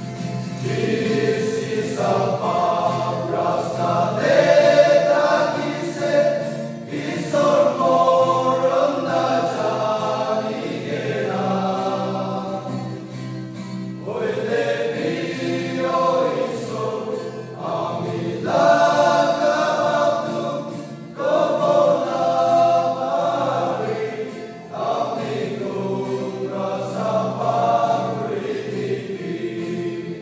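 Men's choir singing a gospel song in Nagamese, in long sustained phrases with short breaks between them.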